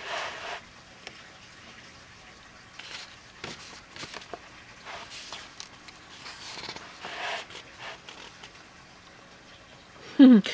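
Paper pages of an art journal rustling and brushing under a hand in short, scattered swishes as the book is handled and a page is turned. A washing machine runs faintly underneath as a low steady hum.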